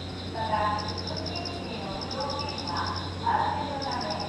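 Crickets chirping in rapid pulsed trills about a second long, separated by short gaps, over faint voices of people talking and a low steady hum.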